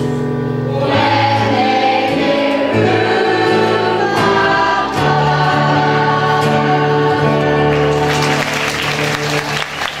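Stage cast of young singers singing in full chorus with keyboard accompaniment, ending on a long held chord. Audience applause breaks in about eight seconds in as the number finishes.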